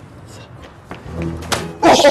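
A dull thunk about one and a half seconds in, followed near the end by a loud voice crying out.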